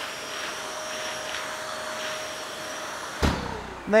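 Bosch GAS 55 M AFC wet vac running steadily with a whine, its floor nozzle sucking up water from a concrete floor. A little over three seconds in there is a low jolt, and the motor's pitch falls as it winds down.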